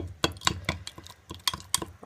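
Metal spoon clinking against the inside of a glass mason jar while stirring a thick mix of coconut oil and baking soda. The clicks come in a quick, even rhythm of about four to five a second.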